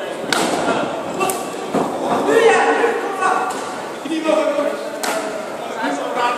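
Shouting voices from the crowd and corners, broken by about five sharp smacks as kicks and punches land.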